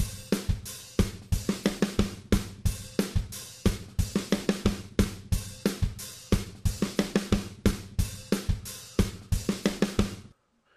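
Sampled 1970s funk drum-kit loop (kick, snare and hi-hat) playing back from a digital audio workstation: a one-bar fill at 90 beats per minute repeated for four bars. It stops just after the end.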